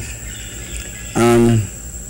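Mostly a pause in a man's speech, with one drawn-out spoken word a little after a second in. A steady high-pitched whine and a low hum run underneath.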